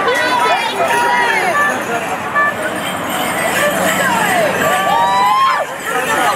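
Crowd chatter: several people talking at once.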